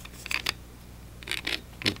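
Short clicks and scrapes from a tripod's camera-mount plate and its metal mounting screw being handled, in two small clusters, over a steady low hum.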